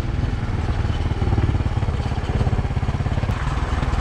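Motorcycle engine running steadily as the bike rides along a gravel dirt road.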